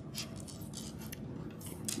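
Plastic pony beads clicking lightly against each other as they are slid along a cord by hand, with a few short, separate clicks.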